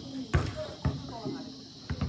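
A volleyball being hit by players' hands: three sharp thumps, the first two close together and the third about a second later, over voices of players and onlookers.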